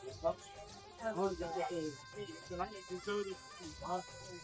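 Indistinct voices talking over background music with steady held tones.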